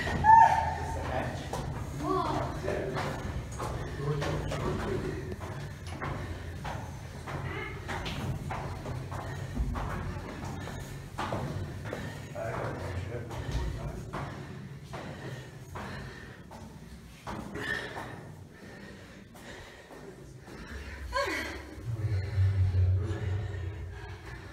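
Footsteps on a cast-iron spiral staircase: a long run of clanks and thuds as people climb the lighthouse tower stairs.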